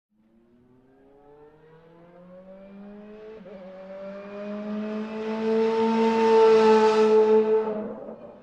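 A car engine accelerating and growing steadily louder, its pitch climbing, with a brief dip in pitch about three and a half seconds in; it is loudest near the end, then fades out.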